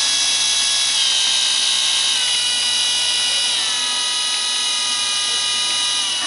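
Two DC power window motors running on a PWM H-bridge motor controller, a steady electric whir with the controllers' high PWM whine. The pitch steps down three times, about one, two and three and a half seconds in, as the motors are slowed from full speed.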